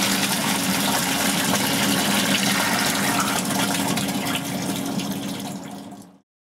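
Water gushing steadily through a dry-trap tundish at about 18 litres a minute, beyond its 12 litre-a-minute rating, from a discharge pipe with an elbow just above the tundish. A steady low hum runs underneath, and the sound fades out near the end.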